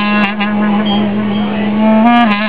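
Handmade bamboo saxophone holding one long, low, steady note.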